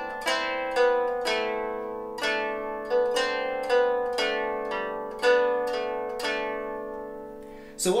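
Germanic round lyre played with a plectrum: single plucked notes alternating with drone strings, a slow run of plucks about every half second to second, each left to ring and fade.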